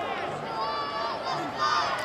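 Young footballers and spectators shouting and calling out across the pitch, several high voices overlapping.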